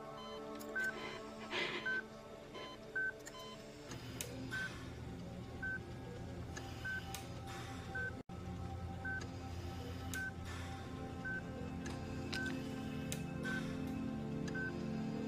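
Hospital bedside patient monitor beeping steadily, one short high beep about every second, over soft background music that fills out a few seconds in.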